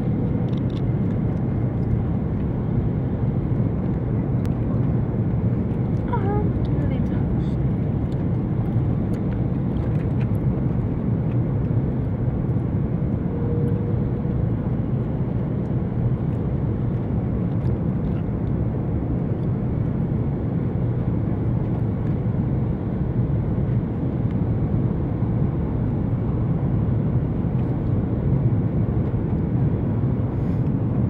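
Steady cabin noise of an Airbus A330-300 airliner on approach: the engines and the rush of air heard from a window seat, a loud, even, deep roar. A faint short steady tone sounds about halfway through.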